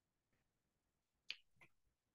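Near silence, broken by a short, sharp click a little over a second in and a fainter one just after it.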